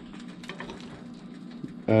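Faint steady low hum with a few soft clicks of a metal fork against a ceramic plate as it cuts into a fish fillet. A man's voice comes in at the very end.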